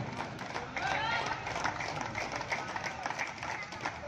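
Shouting voices, loudest about a second in, over quick scuffing footsteps on the dirt court during a kabaddi raid.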